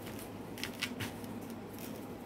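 Gloved hand working coarse kosher salt over raw pork in a plastic bucket: a string of short, crisp gritty rustles and crunches.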